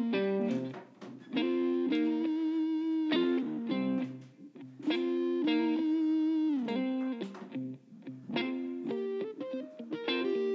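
Background guitar music: a melodic line played in phrases of a few seconds, some notes sliding down in pitch, with brief gaps between phrases.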